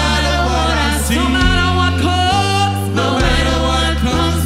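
A gospel praise team of several singers on microphones, singing together in harmony. Beneath them, held low notes in the accompaniment change about once a second.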